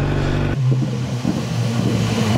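BMW S1000R inline-four engine running with a steady note, the sound changing about half a second in.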